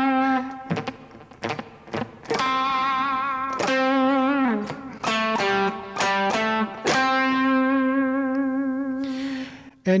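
Electric guitar playing a short lead lick, its sustained notes held with a slow, wide vibrato. There is a brief pause about a second in, a note that slides down in pitch after about four seconds, and a long vibrato-held note near the end.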